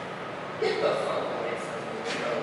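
A man's voice says a few words about half a second in, over steady room noise with a faint hum.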